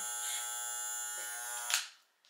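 Electric hair clippers running with a steady buzz while trimming the ends of a straight wig. The buzz cuts off near the end just after a sharp click.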